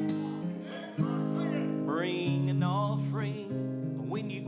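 Acoustic guitar strumming held chords, with a fresh strum about a second in; from about halfway through, a voice sings a high, wavering melody over it.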